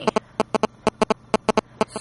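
A quick run of sharp, irregular clicks, about fifteen in two seconds, from a Motorola V365 flip phone being handled and its keys pressed close to the microphone.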